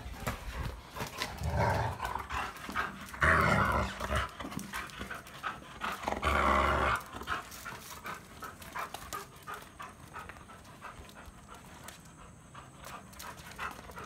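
A Labrador retriever at play with a ball, making three short noisy vocal sounds in the first seven seconds, with panting between them. Many light clicks run through it, and it grows quieter in the second half.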